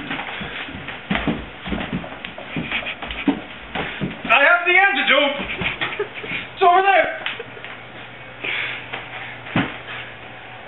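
Scuffling and shuffling of two people struggling together, with scattered bumps and knocks. Two loud wordless cries come about four to five seconds in and again near seven seconds, and a sharp thud comes near the end.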